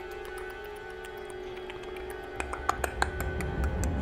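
Quiet suspense background music with held tones, over which a person makes a quick, irregular run of sharp clicks in imitation of a giant insect's mandibles clacking, the clicks coming thickest in the second half.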